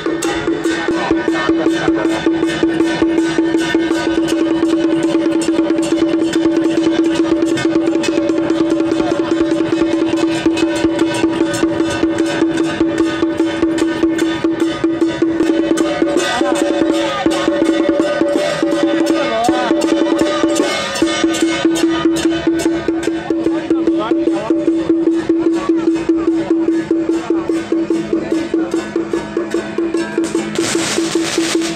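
Traditional procession music: one long held tone over a rapid, even beat of sharp clicks, with a wavering melody line rising above it about midway.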